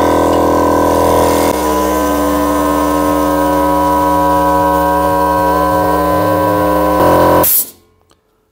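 Small workshop air compressor starting up and running steadily as it pumps up its tank, then cutting out about seven and a half seconds in with a short hiss of released air. Its pressure switch lets it run on to about 120 psi, higher than the 100 psi wanted.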